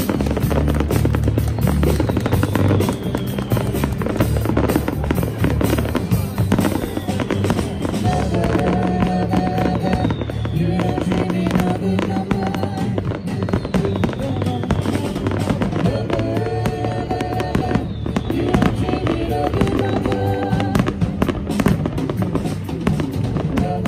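Aerial fireworks going off in a dense run of bangs and crackles, with music playing over them; the music's sustained notes come in strongly about a third of the way in.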